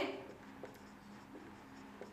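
Marker pen writing on a whiteboard: faint strokes of the tip across the board.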